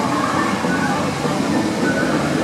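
A steel roller coaster train, the Incredible Hulk Coaster, running along its looping track with a steady rumble, mixed with people's voices.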